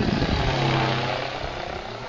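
Electric RC helicopter (FunCopter V2) in flight: steady rotor and motor hum with a low, even pitch, loudest in the first second and then easing off.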